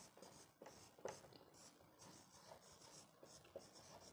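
Marker pen writing on a whiteboard: faint squeaking strokes of the felt tip across the board, with a light tap about a second in.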